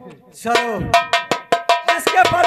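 Percussion accompaniment of folk theatre: drum strokes together with a ringing metal percussion instrument, struck about four or five times a second. It starts about half a second in, after a brief pause.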